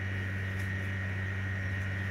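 Steady electrical hum, low and even, with a thin high whine on top.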